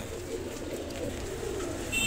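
Domestic pigeons cooing, low and continuous.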